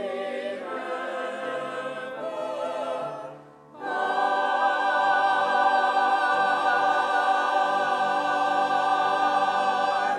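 Mixed church choir singing with piano accompaniment. After a short breath pause about three and a half seconds in, the choir comes back louder on a long held final chord that releases near the end.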